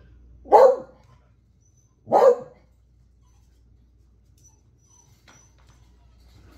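A beagle barking twice, two short sharp barks about a second and a half apart.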